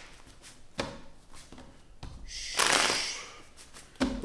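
A deck of tarot cards being shuffled by hand: soft card clicks, then a louder burst of shuffling about a second long a little past the middle.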